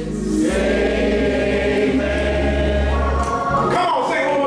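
Gospel singing by a group of voices in a church, over steady held low bass notes that stop near the end.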